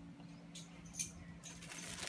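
Plastic cling film lifted off a plastic storage-box grow chamber: a couple of faint clicks, then a soft crinkling near the end, over a steady low hum.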